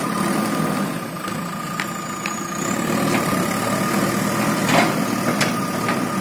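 JCB backhoe loader's diesel engine running steadily at low revs, with a thin, steady high whine over it.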